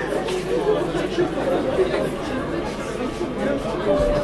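Indistinct chatter of many voices in a club between songs, with a short steady tone near the end.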